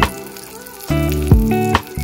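Sliced calabresa sausage sizzling as it fries in a little margarine in a stainless steel pan. The sizzle is heard clearly for about the first second, while background music drops out, and then sits under the music when it comes back louder.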